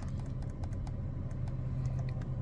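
Several soft clicks of a Nissan Versa's steering-wheel control switch being pressed to step the oil-change reminder mileage, over a steady low hum.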